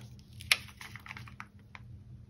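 Scattered light clicks and taps of tweezers and a sheet of small sparkle stickers being handled, with one sharper click about half a second in.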